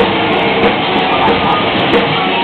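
Rock band playing live, loud and distorted: guitars and drums overload the recording microphone into a dense wash of sound, with regular drum accents.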